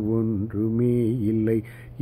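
A man singing a Carnatic devotional song in raga Varali, solo voice, holding long notes with gliding ornaments. He breaks off briefly near the end.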